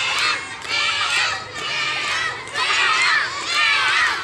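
A large crowd of young children shouting together, the many high voices swelling and dropping back in repeated bursts about a second apart.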